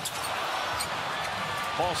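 A loose basketball bouncing on a hardwood court under steady arena crowd noise, as players scramble for it. A commentator's voice comes in near the end.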